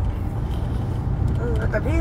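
A steady low rumble fills a pause in speech; a woman's voice starts again near the end.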